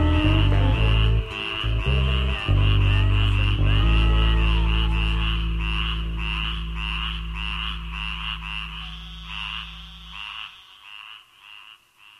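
Closing bars of a swamp-blues song: a few bass notes, then one long low note that slowly fades out. Over it runs a chorus of frogs croaking in quick, even pulses, which dies away near the end.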